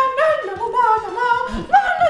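Song with a high singing voice gliding up and down between notes.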